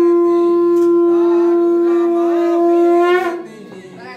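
A conch shell (shankh) blown in one long, steady note for the aarti, cutting off about three seconds in.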